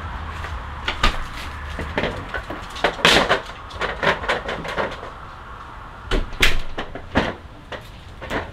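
Irregular knocks and clicks of things being handled, like a door or cupboard, loudest about three seconds in and again around six seconds in.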